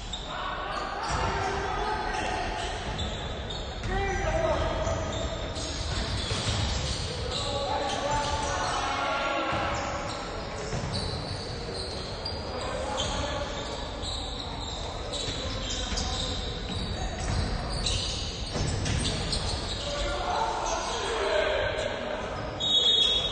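A basketball game on a hardwood court in a large gym: the ball bouncing repeatedly on the floor, with players' shouts echoing through the hall.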